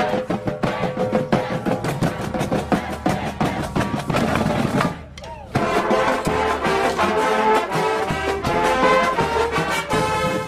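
Marching band playing: brass horns holding chords over a drumline of snares and bass drums, with a brief drop in the music about five seconds in.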